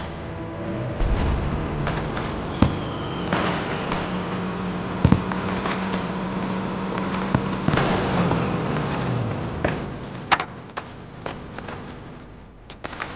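Fireworks popping and crackling, with a motorcycle engine running underneath; the engine note drops about nine seconds in as the bike slows to a stop.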